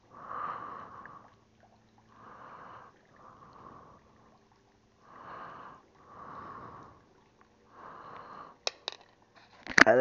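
A man breathing heavily close to the microphone, in and out through his nose in a slow, regular rhythm. A few sharp clicks come near the end.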